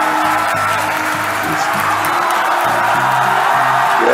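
Music with a crowd cheering and whooping, played back from a video of Falcon Heavy side boosters landing.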